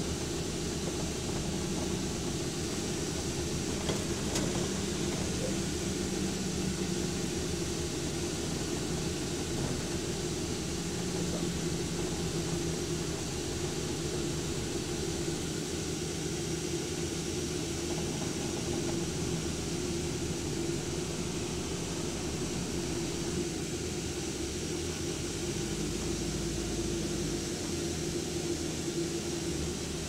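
Inside the upper deck of a moving double-decker bus: the engine and drivetrain hum steadily under road noise, with a deeper rumble for a couple of seconds near the end.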